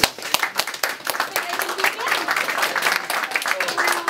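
A small group of people applauding: a dense patter of hand claps throughout, with voices mixed in.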